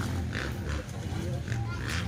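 Dirt bike engine idling with a low, steady rumble, with people's voices over it.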